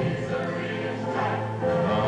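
Gospel choir singing with a male soloist, voices holding sustained notes. The singing grows fuller and louder near the end.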